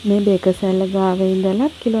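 A voice singing a melodic line with sliding and long-held notes over a steady hiss, most likely a song laid over the footage.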